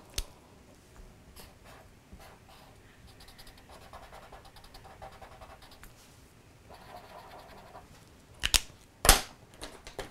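Felt-tip marker scratching across paper in short strokes, then two sharp clicks about half a second apart near the end.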